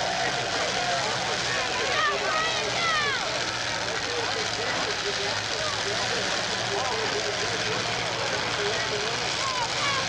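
Demolition derby cars' engines running as the wrecked cars push against one another, a steady engine drone under a crowd's constant din of voices and shouts.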